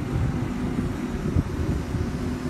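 Wind buffeting the microphone in gusts, over the low steady hum of a working crane's engine.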